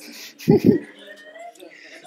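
A short laugh in two quick bursts about half a second in, followed by faint voices.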